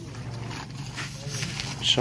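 Faint voices talking in the background, with a louder word spoken near the end.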